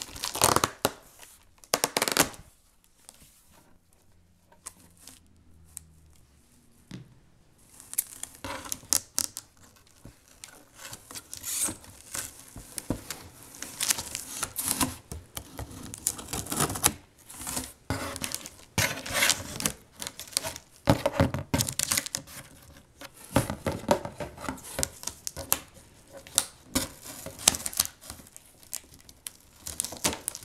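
Packing tape being pulled and torn off a cardboard shipping box, with irregular rasping tears and cardboard rustling and scraping, broken by a few seconds' lull near the start.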